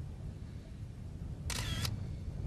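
A camera shutter firing in one quick burst lasting about a third of a second, about one and a half seconds in, over a steady low rumble.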